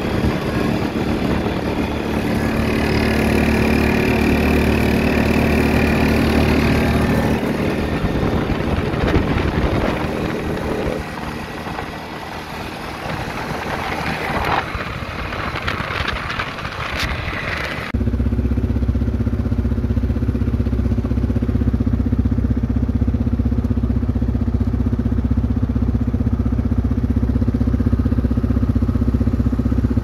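Small engine of a handlebar-steered ride-on vehicle running as it travels along, its note wavering with speed. About eighteen seconds in the sound changes abruptly to a steadier, lower engine hum.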